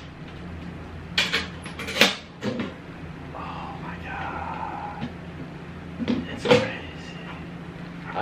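Metal toolbox being unlatched and opened: a few sharp clicks and clanks of its latches and lid about one to two and a half seconds in, then two more knocks near the end as the tray is handled.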